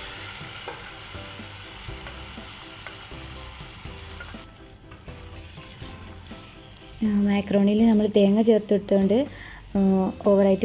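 Cooked macaroni in masala sauce hitting hot oil tempered with curry leaves and mustard seeds in a pot, sizzling loudly at first and dying down over about four seconds. After that, a spatula stirs the pasta.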